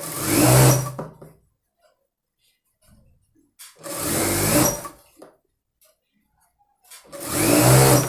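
Industrial single-needle lockstitch sewing machine stitching a fabric piping strip in three short runs of about a second each, speeding up and slowing down with a pause between runs.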